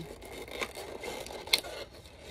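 Small toy packaging being worked open carefully by hand: scraping and rustling, with one sharp click about one and a half seconds in.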